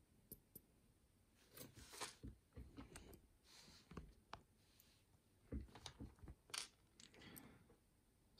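Faint, irregular small clicks and scrapes of a DOM 333S lock plug being handled in the fingers while its pins are worked out into a plastic pin tray.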